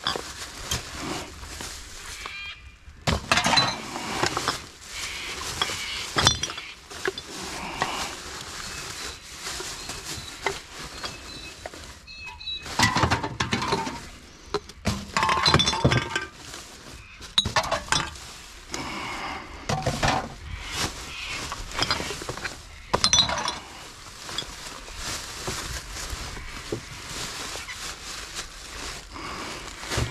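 Plastic garbage bags crinkling and rustling while empty cans and glass bottles clink and clatter as they are rummaged through by hand, in irregular bursts.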